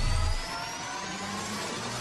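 Synthesized logo-sting sound effect: the low rumble of a deep boom dies away about half a second in, under several tones gliding slowly upward over a hiss, like a rising whoosh.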